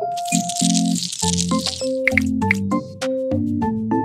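Background keyboard music playing a simple stepped melody. Over its first two seconds comes a hissing squirt as a small lime wedge is squeezed, followed by a few light clicks.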